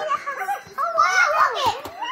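High-pitched, squeaky voice-like sounds that sweep up and down in pitch, loudest from about a second in.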